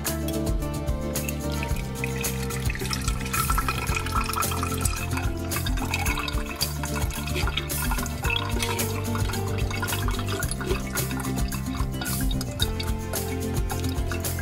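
Background music with a steady beat throughout. Over it, in the first half, herbal infusion poured through a wire-mesh strainer into a glass jug, splashing and trickling.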